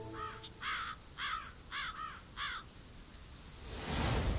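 A crow cawing, a series of about five harsh caws over two and a half seconds, as a sound effect. A rising rush of noise follows near the end.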